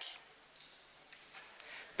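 Faint room tone with a few soft ticks a little past the middle.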